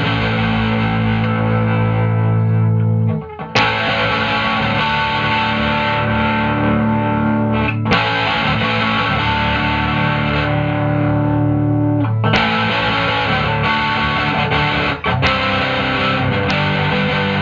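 Kingston Swinger electric guitar played through a distorted amplifier. Sustained strummed chords ring out and change about every four seconds, each new chord struck sharply.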